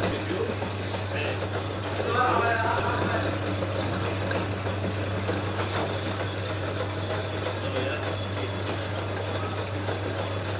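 Electric dough sheeter running with a steady low hum as dough is fed through its rollers.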